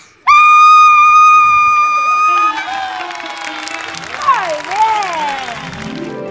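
A young boy's voice holding one long, loud note on the last word of a recited gaucho verse for about two seconds, then cut off as the studio audience breaks into cheering and applause.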